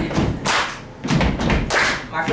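Beatboxed beat into a handheld microphone, sharp thumps about twice a second, under a teenager's improvised rap.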